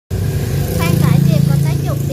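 An engine's low, steady drone, loud at first and fading away just after the end, with a woman talking over it from about a second in.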